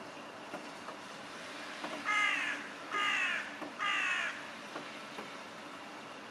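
A bird giving three harsh calls about a second apart, each dropping in pitch, over a steady background hiss.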